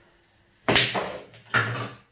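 Break shot on a small tabletop pool table: a sharp crack as the cue ball strikes the racked balls, followed by the balls clattering apart. A second loud burst of knocking comes less than a second later and dies away.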